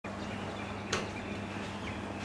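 Outdoor ambience: a steady hum and hiss, with a single sharp click about a second in.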